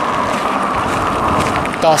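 Road traffic noise: a steady hiss of tyres on the road from approaching cars.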